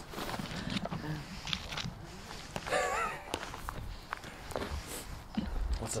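Footsteps and shuffling on dry, bark-strewn dirt, with rustling as a disc golf bag is handled. A short vocal sound comes about halfway through.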